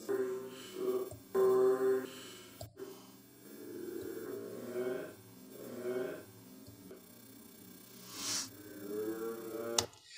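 A man's interview dialogue played backwards at very slow speed in Adobe Premiere Pro's Shift+J shuttle, which keeps the pitch unchanged. It comes out as drawn-out, smeared vowel sounds in several stretches rather than words.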